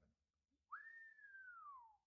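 A person whistling in admiration: one clear note that swoops up, then slides slowly down over about a second and a half.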